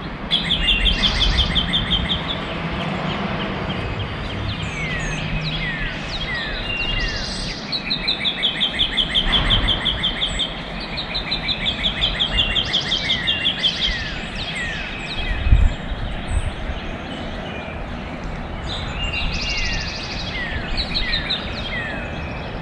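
Several songbirds singing together: fast trills that each last a second or two, mixed with short falling chirps. A single dull thump comes about two-thirds of the way through.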